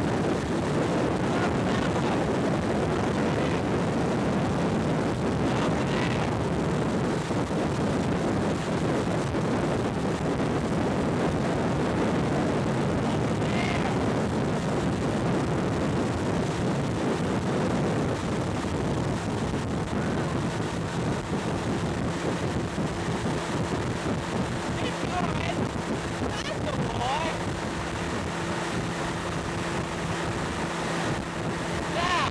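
Motorboat engine running steadily at towing speed, with wind buffeting the microphone and the rush of the wake. A steady engine hum comes through more clearly in the second half.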